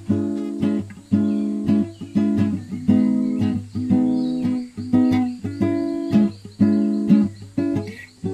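Acoustic guitar strummed in chords, a strum about once a second, each ringing on and fading before the next.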